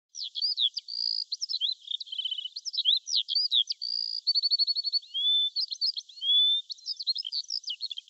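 A bird singing a fast, varied, high-pitched song of chirps, trills, short held whistles and quick sweeps, with only brief gaps between phrases.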